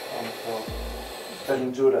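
Cooling fan of a Godox FV200 LED/flash studio light running: a steady hiss with a faint high whine.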